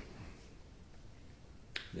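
A pause with only faint room noise, then one short, sharp click near the end, just before a man's voice resumes.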